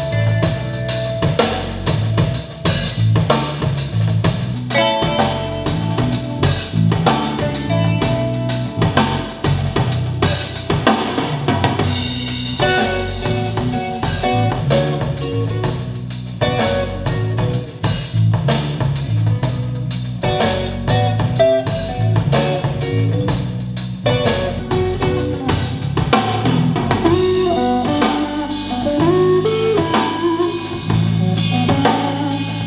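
Music with drums playing through a pair of Focal Chora 806 two-way bookshelf speakers, heard in the room.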